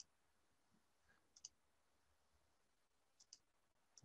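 Near silence broken by a few faint computer mouse clicks, two of them in quick pairs like double-clicks.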